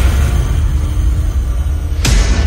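Deep, rumbling bass drone of a cinematic logo sting, with a new hit beginning right at the end.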